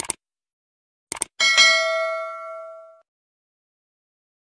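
Sound effects of a subscribe-button animation. First a quick double mouse click, then another double click about a second in. Then a notification-bell ding rings out and fades over about a second and a half.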